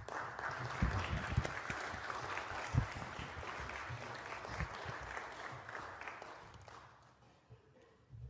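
Applause from a chamber of senators, starting at once and dying away about seven seconds in.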